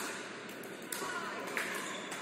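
Pickleball paddles striking a plastic ball: a sharp hit right at the start as the serve is struck, and another about a second in as it is returned, over the steady background noise of an indoor hall.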